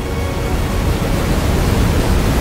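Loud, even static-like rush of noise, swelling slowly: an added sound effect rather than anything in the room.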